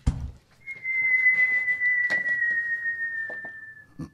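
A single long whistle, the launch whistle of a celebratory firework shell, holding one high note and sliding slowly lower for about three seconds before it stops. A few faint knocks sound under it.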